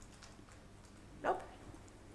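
Quiet room tone in a lecture room during a pause, broken about a second in by one short spoken word, 'Nope'.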